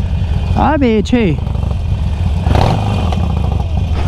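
Harley-Davidson Forty-Eight's air-cooled V-twin idling with a steady, even low rumble while stopped in traffic.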